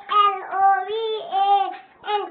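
A young child singing a run of short, held notes, about two a second.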